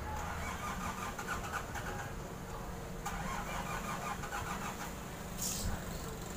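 A faint, steady low-pitched hum, with a brief scrape about five and a half seconds in.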